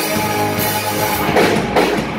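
A live rock band playing: a drum kit with sharp hits about a second and a half in and again near the end, over electric guitars and bass.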